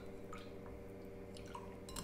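Spatula stirring an oil and water mixture in a glass beaker: faint liquid sloshing with a few light taps of the spatula against the glass.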